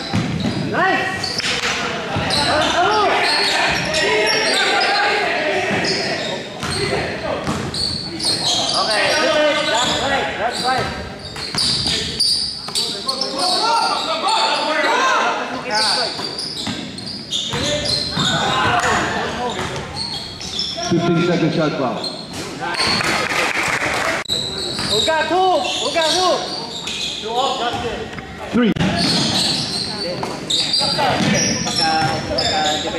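Basketball game in a gymnasium: a basketball bouncing on the hardwood court, with players and spectators shouting and calling out, echoing around the hall.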